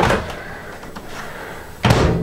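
Over-the-range microwave door opened with its push-button release, then pushed shut, the closing landing as one sharp clunk near the end.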